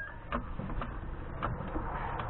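Floor jack being pumped to push up the rear lower control arm, with irregular short clicks and knocks, about five in two seconds.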